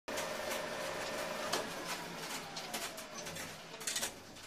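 Sound effects for an animated logo: a steady crackling hiss with scattered clicks, a sharp hit about one and a half seconds in, then a tone sliding slowly downward, and another hit near the end.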